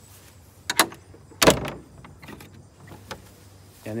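Wooden fence gate being shut: a sharp knock a little under a second in, then a louder bang about a second and a half in as it closes.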